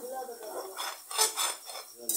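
A spatula scraping and clinking against a frying pan as scrambled egg and tomato is stirred and turned, in irregular strokes with a busier run of scrapes past the middle.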